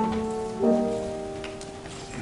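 Piano playing slow, soft chords. A new chord is struck right at the start and another just over half a second in, and each is left to ring and fade.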